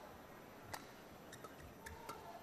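Faint badminton rally: a few sharp clicks of rackets striking the shuttlecock, the two clearest about a second apart, with smaller ticks between.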